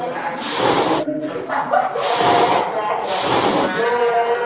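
Three short hissing bursts, each under a second, about a second apart, over faint voices.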